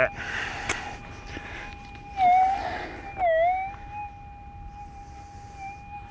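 Minelab GPX 6000 gold detector's steady, mid-pitched threshold tone, with two brief louder warbles where the pitch dips and recovers, about two and three seconds in.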